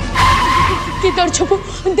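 A comedic tyre-screech sound effect: a sudden squeal about half a second long, fading out, followed by a boy speaking fast.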